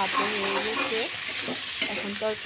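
Red amaranth greens sizzling as they fry in oil in a steel kadai, stirred with a metal spatula that scrapes and clicks against the pan.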